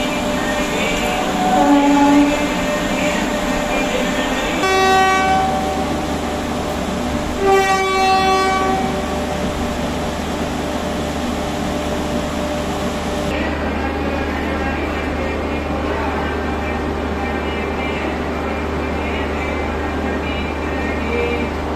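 Train horn sounding twice, each blast about a second long, about five and eight seconds in, over a steady hum from the standing trainset.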